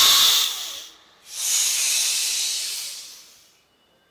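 Two long hisses, each fading away, the second ending in a moment of silence.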